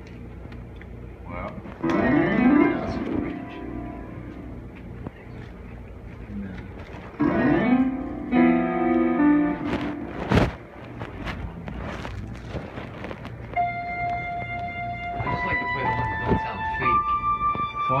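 Informal music-making with voices and played notes; from about 13 seconds in, a run of held, steady keyboard tones, each sustained before stepping to a new pitch. A sharp knock about ten seconds in.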